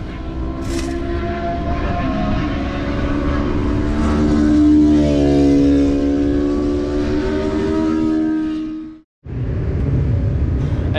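Racing motorcycle engines running on the circuit, their pitch and loudness slowly rising to a peak midway and then falling away. The sound cuts off abruptly about nine seconds in.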